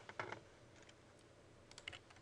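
Faint computer keyboard and mouse clicks: a short cluster just after the start, then a quick run of sharp clicks near the end.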